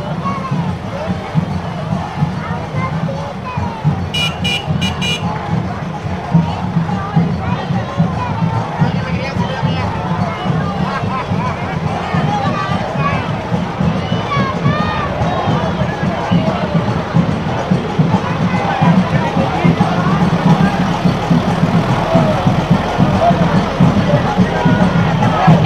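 Cuban street conga procession: many voices chattering and calling over dense, rapid drumming, growing louder toward the end. About four seconds in there are four short, high toots.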